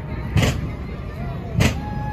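Two heavy thumps about a second and a quarter apart, part of a steady beat, over the murmur of a street crowd.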